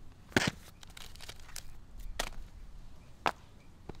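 A few sharp knocks, the loudest about half a second in and others near two and three seconds, over a low background.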